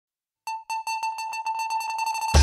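Opening of a funky pop instrumental: after about half a second of silence, a single synthesizer note repeats on one pitch, the repeats coming faster and faster as a build-up.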